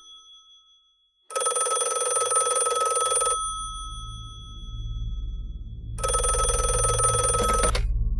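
A telephone ringing twice, each ring lasting about two seconds with a pause of about two and a half seconds between, starting after a second of silence; a low hum runs underneath from about two seconds in.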